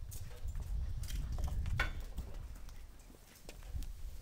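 Scattered light footsteps and small knocks on hard pavement over a low rumble, with one short sharper sound just before two seconds in.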